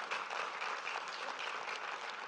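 Audience applauding steadily, many hands clapping at once, fairly faint.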